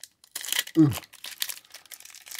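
Foil wrapper of a 1992 Fleer Ultra baseball card pack crinkling and tearing open under the fingers, a run of crackles starting about a third of a second in.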